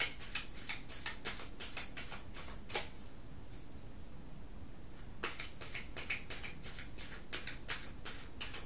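A deck of tarot cards being shuffled by hand: runs of quick, crisp card flicks, about four a second, a pause of about two seconds midway, then more flicks.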